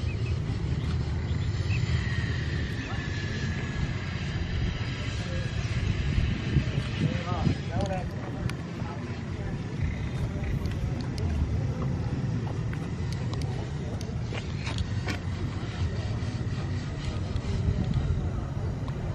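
Outdoor background noise: a steady low rumble, with brief faint voices about seven seconds in and a thin steady whine from about two seconds on.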